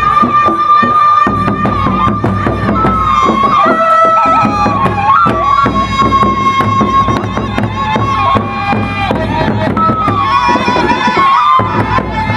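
Sasak gendang beleq ensemble playing on the march: large double-headed gendang beleq drums are beaten in dense, driving strokes with clashing cymbals, under a loud held melody from a wind instrument that slides between notes.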